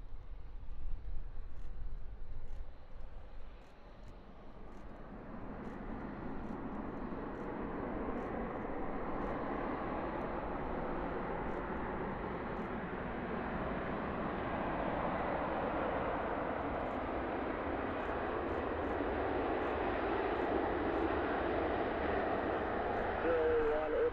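Boeing P-8 Poseidon's twin CFM56 turbofans during the landing rollout on a wet runway: a broad jet roar that swells from about five seconds in and stays loud as the aircraft comes closer.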